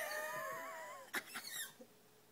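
Small Chihuahua–miniature pinscher mix dog howling: one wavering howl of about a second that sags slightly in pitch, followed by a few short, fainter sounds.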